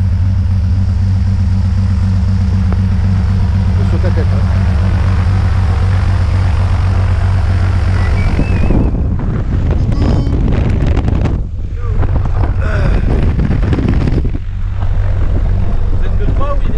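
Single-engine propeller plane's piston engine idling with the propeller turning: a steady low drone. About eight seconds in it becomes louder and rougher, with rushing propeller wash and wind, heard from right beside the open cabin door.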